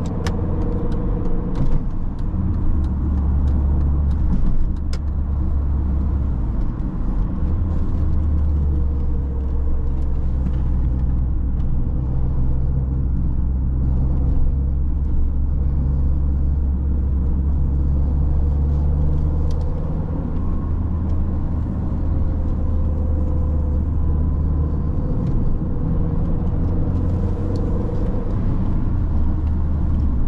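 2001 Mini One R50's 1.6-litre four-cylinder petrol engine and tyre noise heard from inside the cabin while driving: a steady low drone with road noise over it. The engine note steps up or down a few times.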